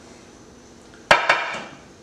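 Glass casserole dish set down on a metal sheet pan: a sharp clank about halfway through, then a second lighter knock just after, with a short ring.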